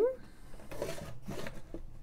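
Cardboard board-game box being handled on a counter: faint rustling and scraping with a few light taps in the middle.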